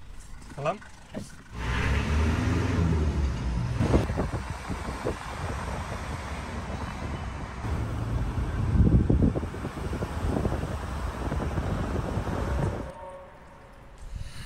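Engine and road noise inside a moving taxi. It starts abruptly about a second and a half in and cuts off just before the end.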